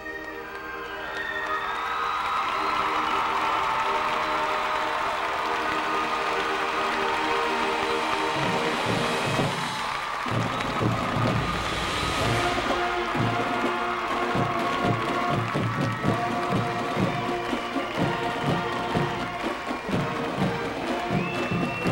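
High school marching band playing: the horns swell into a sustained chord, and about halfway through the drums come in with a steady beat under the horns.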